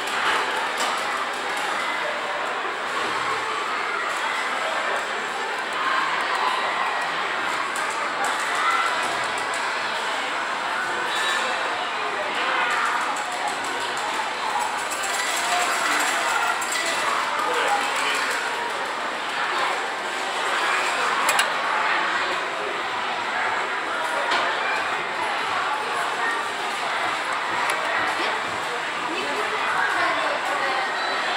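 Game-centre background din: a steady wash of indistinct voices and machine sounds, with a few short electronic pings.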